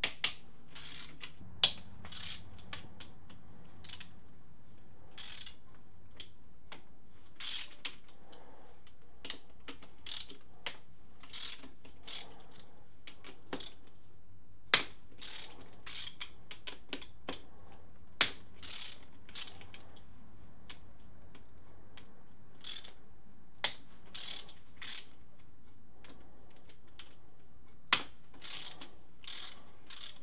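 Hand socket ratchet clicking in irregular runs as 10 mm crankcase bolts are loosened on a motorcycle engine, with a few louder sharp metal knocks among the clicks.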